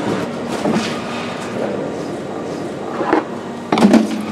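Hydraulic press running steadily as its plate lifts away from crushed shaving foam, with a faint steady hum under the noise. A short louder noise comes just before the end.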